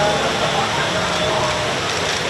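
Indistinct chatter of several people talking at once, over a steady hiss.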